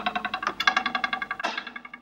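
A ruler held down on a wooden table edge being twanged: its free end vibrates in a rapid buzzing rattle with a pitched tone. It is twanged again about half a second in and dies away near the end.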